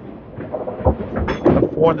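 A candlepin bowling ball thudding onto the wooden lane about a second in, then rumbling as it rolls down the lane, with voices in the background.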